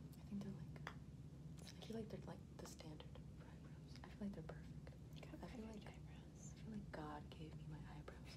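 Quiet whispering in short, broken snatches, with a few faint small clicks, over a low steady hum.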